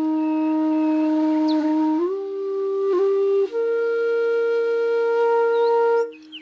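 Background music: a flute playing long held notes over a sustained lower note, stepping up to new pitches a few times.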